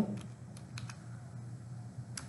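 Computer keyboard being typed on: a few separate, irregular keystroke clicks as a formula is entered.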